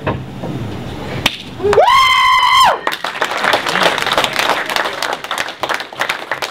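A single loud, high whoop about two seconds in, rising and then held for about a second before it breaks off. Audience clapping and applause follow and carry on.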